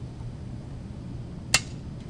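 A single sharp click of a toggle switch being flipped on a test switch panel about one and a half seconds in, changing the state of a digital input. A faint low hum runs underneath.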